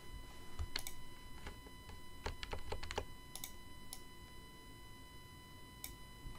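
Faint clicks of a computer keyboard and mouse, about a dozen short clicks with a quick cluster around the middle and one more near the end.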